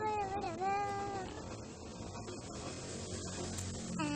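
A domestic cat meowing once: a drawn-out call that falls in pitch, dips, then holds steady before stopping just over a second in, followed by faint room noise.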